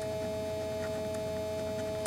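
Steady electrical hum made of a few held tones over a low drone, with a few faint ticks.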